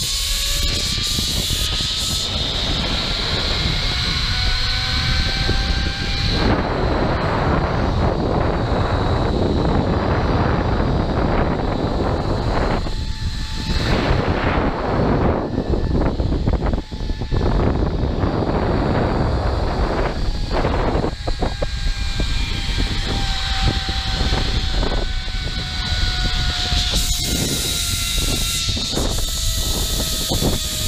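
Zipline trolley pulleys running along a steel cable with a whine that rises in pitch as the rider picks up speed, then heavy wind noise on the microphone at full speed. Near the end the whine returns and falls in pitch as the trolley slows toward the landing platform.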